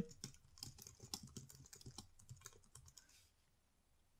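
Faint typing on a computer keyboard: a quick run of keystrokes for about three seconds, then it stops.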